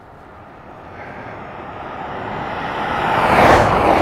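A car driving along an asphalt road and passing close by, its tyre and engine noise rising steadily as it approaches, peaking about three and a half seconds in, then falling away.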